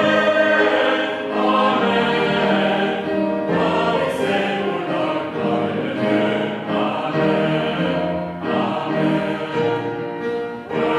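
Congregation singing a hymn together, the sung phrases running on without a break.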